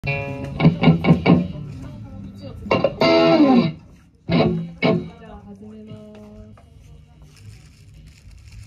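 A rock band's electric guitars and full band playing short chord stabs: four quick hits, a held chord, then two more hits, followed by a few ringing notes that die away.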